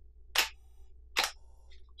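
Canon T4i DSLR shutter firing on a long exposure: a clack as the mirror and shutter open, then a second clack as they close and the mirror returns less than a second later.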